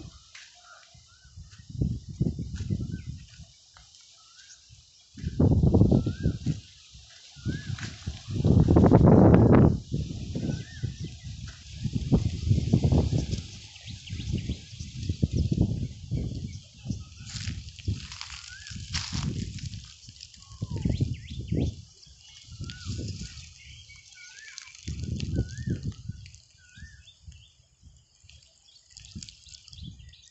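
Wind buffeting the phone's microphone in irregular gusts, the loudest about five and nine seconds in. Small birds chirp with short repeated calls throughout.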